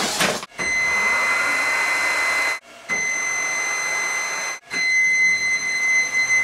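Electric drive motors and gearboxes of small four-wheel-drive robot platforms running, a steady high whine over a rushing mechanical noise. It comes in three runs of about two seconds each, with short stops between.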